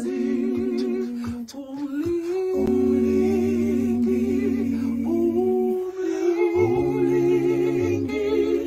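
Unaccompanied wordless humming of a slow tune in long held notes with a slight waver, with brief breaks between phrases.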